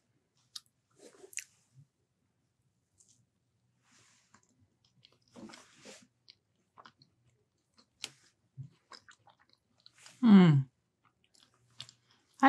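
A person quietly chewing a bite of soft muffin, with faint scattered mouth and cutlery clicks. About ten seconds in comes a short hum that falls in pitch.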